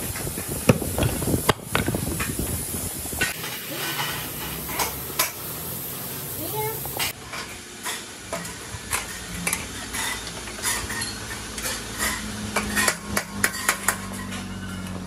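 Clear plastic bags crinkling and rustling as red plastic tricycle parts are slid into them. From about three seconds in, this gives way to a run of short, light taps and clicks of a hammer on a steel tricycle frame, busiest near the end.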